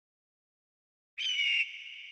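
Film sound effect: silence, then about a second in a sudden shrill high-pitched sound, loud for about half a second with a slightly falling pitch, which drops to a thin steady high ringing tone that slowly fades.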